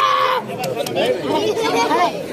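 Speech only: a man addressing a gathering into a microphone, loud at first, then softer talk from about half a second in.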